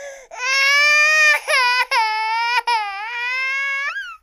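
An infant crying: one long wailing cry of about a second, followed by three shorter, broken cries.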